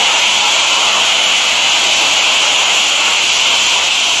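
High-pressure water jet from a car-wash spray lance hissing steadily as it blasts a small rotary tiller clean.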